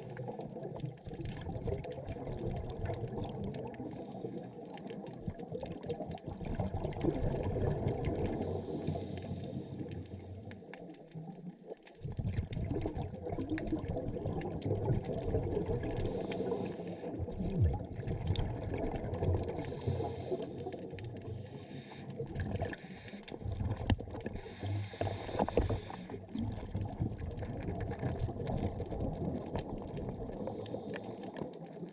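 Underwater sound of a scuba diver breathing through a regulator: long stretches of bubbling, gurgling exhaust bubbles, broken by a short lull a little before the halfway point and a few brief dips later.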